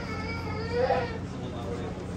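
A small child's high-pitched cry lasting about a second, loudest near its end, over the steady low hum of the tour boat's engine.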